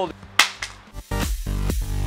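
A single sharp crack about half a second in: a counterfeit iPhone 12 Pro Max thrown down hard onto exposed-aggregate concrete paving, a drop that splits its casing open. Electronic dance music with a heavy beat starts about a second in.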